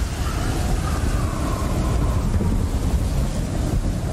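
A steady, loud rumbling noise, heaviest in the deep low end.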